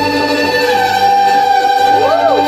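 Live string trio of violin, viola and double bass playing a held, bowed chord, its top note sliding down a little a moment into it.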